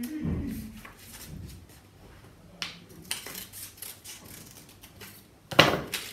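Scissors snipping through folded paper in short, irregular cuts, then a sharp knock near the end as the scissors are set down on the table.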